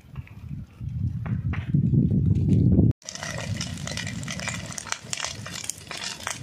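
Wind buffeting the microphone in a gusting low rumble for about three seconds. Then a sudden cut to the crackling of dry leaves and undergrowth burning in a ground fire.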